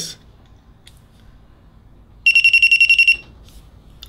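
Nebula 4000 Lite 3-axis gimbal's electronic beeper giving a rapid run of short high-pitched beeps for about a second, a little over two seconds in, its signal in answer to its button being pressed twice.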